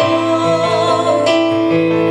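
A live song: a Yamaha Motif ES6 keyboard plays held piano-like chords that change every second or so, with a woman singing into a microphone.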